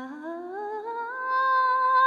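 A solo voice humming or singing wordlessly and unaccompanied, in a Tibetan song, gliding slowly upward about an octave with a slight vibrato, then holding the high note.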